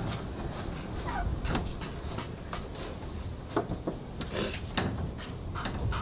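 Milk squirting from a cow's teats in short, irregular spurts as they are stripped by hand, the first milk drawn to get it flowing before the milking machine goes on.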